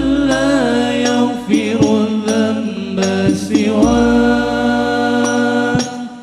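A Banjari hadroh group of male voices chanting sholawat together in long held notes that bend and glide in pitch, with a few scattered hand-drum strikes among them.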